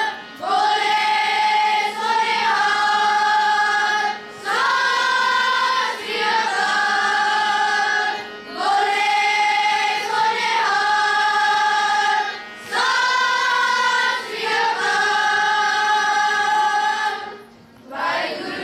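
Children's choir singing a slow song in unison, in phrases of long held notes about two seconds each, with short breaks for breath between them.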